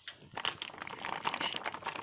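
A plastic tub of light cheese handled close to the microphone for an ASMR-style demonstration, making a fast, irregular run of small clicks and crackles from the plastic.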